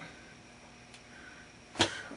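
Quiet small-room tone during a pause in talk, with a faint click about a second in and a short, sharp intake of breath near the end.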